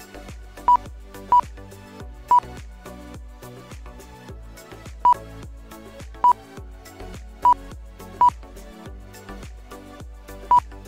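Seven short, loud, identical high beeps at uneven intervals, from the lap-timing system as racing RC cars cross the timing line. Background music with a steady beat plays throughout.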